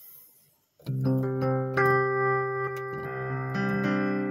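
Digital keyboard playing slow, sustained piano chords, starting about a second in, with the chord changing twice.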